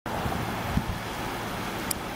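Wind on the microphone over a low steady rumble of outdoor vehicle noise, with a brief faint click near the end.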